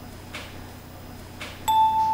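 Quiet room tone, then near the end a single clear bell-like chime note sounds sharply and holds. It is the first note of a background music cue.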